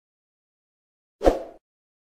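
Silence, then a little over a second in a single short sound effect from a subscribe-button animation, sudden at the start and fading within half a second.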